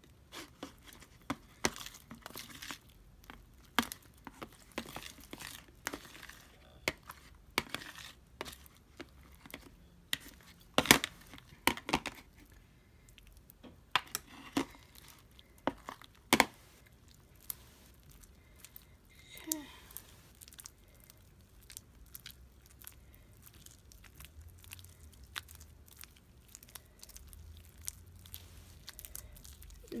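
Homemade slime being mixed, giving irregular sticky clicks, snaps and crackles, with a few louder snaps about a third and halfway through.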